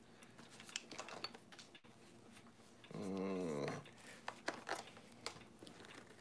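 Soft scattered clicks and rustles of a camera lens being fitted into a padded nylon case, with one short, low vocal sound lasting under a second about three seconds in.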